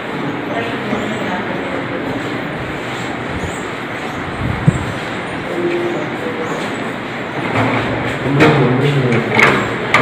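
Indistinct chatter of several people over a steady, noisy background, with louder voices in the last couple of seconds and one sharp click about halfway through.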